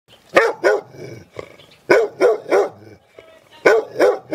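A dog barking repeatedly: two barks, a short pause, three more, then another near the end.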